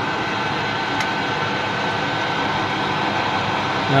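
Metal lathe running at slow spindle speed with the drill backed out and not cutting: a steady mechanical hum with a thin high whine.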